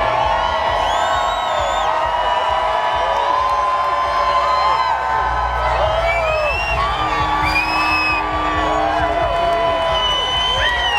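Street crowd cheering and whooping, many voices shouting over one another without a break.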